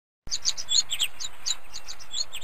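Songbirds chirping: a quick run of short, high chirps over a faint hiss, starting suddenly about a quarter second in.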